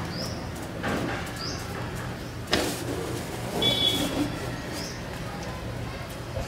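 A steady low hum with scattered clicks and a few short high chirps, and a single sharp knock about two and a half seconds in.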